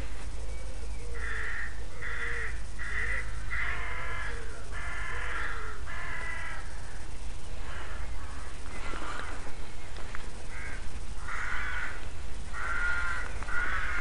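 Crows cawing: a quick run of repeated harsh caws, a lull of a few seconds, then another run near the end, over a steady low rumble.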